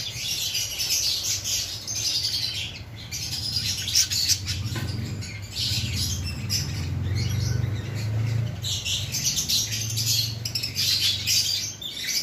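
A flock of small aviary birds chirping and chattering without a break, a dense high-pitched twittering of many overlapping calls.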